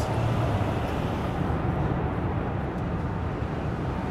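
Steady low road and engine noise heard inside the cabin of a moving Rolls-Royce.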